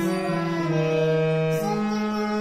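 Harmonium playing a slow melody in held, reedy notes that step down in pitch and then rise again near the end.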